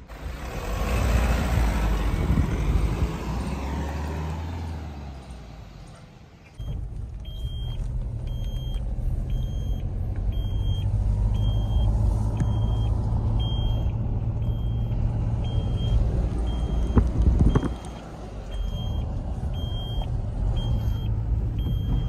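Vehicle noise swelling and fading away, then the steady low engine and road rumble heard inside a moving Mahindra Scorpio SUV. Over the rumble, a short high electronic beep repeats about every three-quarters of a second, with a brief clatter near the end.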